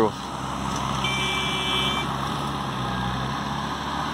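A vehicle engine running steadily in the background, with a single high beep about a second in that lasts about a second.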